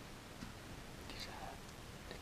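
Quiet room with one faint tick, then a short soft whisper or breath about a second in.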